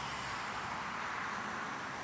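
Steady hiss of road traffic, car tyres on a wet road.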